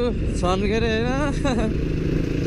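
Dirt bike engine running under way, with steady wind rumble on a helmet-mounted microphone. A voice talks over it from about half a second in until about a second and a half.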